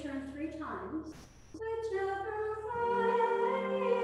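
A woman singing a chant melody to teach it. The line breaks off briefly a little after a second in, then goes on in long held notes, and a deeper sustained note joins near three seconds in.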